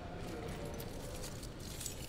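Faint, indistinct voices in a large room over a low rumble, with a quick run of light clicks or knocks near the end.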